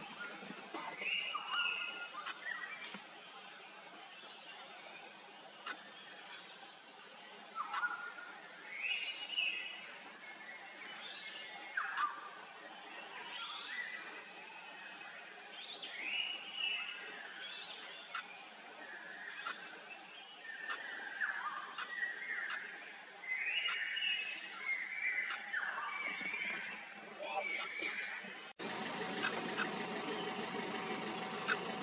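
Forest ambience: a steady high-pitched insect drone, with short calls in bursts every few seconds and a few sharp clicks. Near the end the sound cuts abruptly to a steadier, lower hum.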